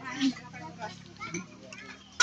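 Faint background chatter of several people's voices, with no one speaking up close.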